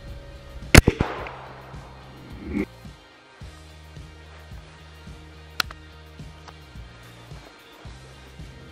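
.410 shotgun fired once about a second in, a sharp report with a short echo trailing off, over background music. A second, fainter sharp crack comes a little past the halfway mark.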